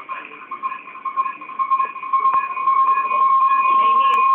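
Audio feedback howl on a video call: a steady whistling tone that grows steadily louder over the few seconds, caused by the open microphones and speakers of two adjacent meeting rooms picking each other up. Faint muffled voices lie underneath.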